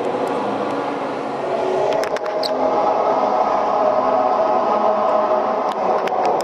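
A crowd of protesters chanting together, the voices blurred into a steady loud mass with no single words standing out. A few sharp clicks come about two seconds in and again near the end.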